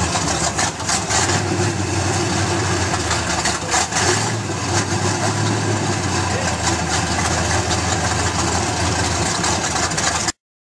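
A motor vehicle engine running steadily at idle, a continuous low rumble with mechanical noise over it.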